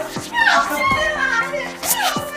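Excited, high-pitched voices over background music, with short falling pitch slides recurring through it.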